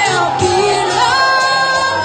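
A girl singing into a microphone, amplified through a portable loudspeaker, holding long notes that slide up and down in pitch.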